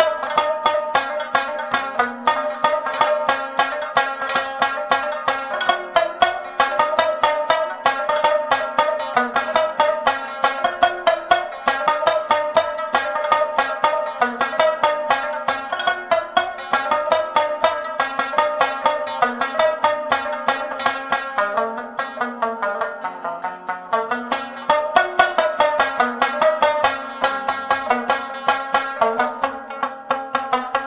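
Afghan rabab playing a fast melody of rapid plucked notes over lower, drone-like strings.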